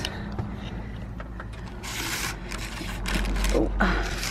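Curtain fabric rustling and scraping as it is handled up close, in several short bursts from about two seconds in, over a low rumble. A short "ooh" comes near the end.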